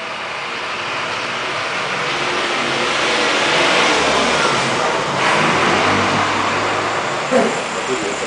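City bus driving past close by in street traffic, its engine and road noise swelling to a peak about halfway through and then easing off.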